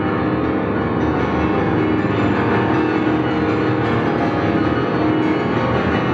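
Solo grand piano playing a contemporary classical piece: a dense, loud mass of rapidly repeated notes, held steady with no break.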